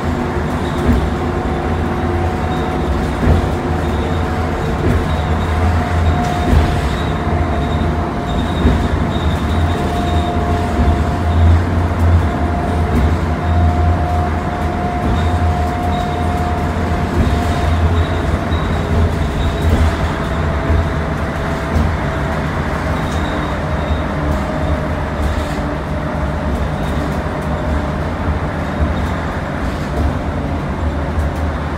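Interior of a 2019 Nova Bus LFS city bus under way: steady engine and road rumble with a whine that slowly rises and falls with speed, a faint high steady tone, and occasional light rattles.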